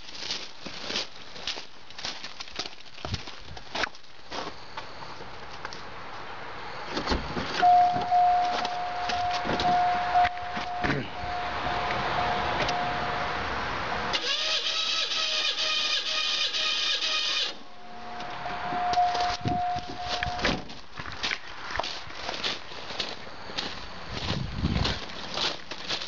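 Footsteps crunch on gravel. Then a car's warning chime dings steadily. About 14 seconds in, the starter cranks the V6 for about three seconds with its spark plugs removed, so it spins without firing while a compression gauge takes a reading on one cylinder. The chime sounds again, and then footsteps crunch on gravel.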